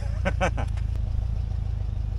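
A short laugh of a few quick breaths about half a second in, over a steady low rumble.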